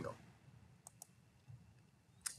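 Near silence with two faint, quick clicks about a second in, a computer mouse clicking to advance a presentation slide.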